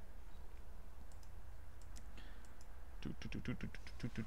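Computer keyboard typing: a few scattered keystrokes, then a quick run of keys near the end, over a low steady hum.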